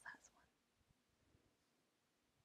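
A woman's voice trails off in a faint, breathy word in the first moment, then near silence: room tone.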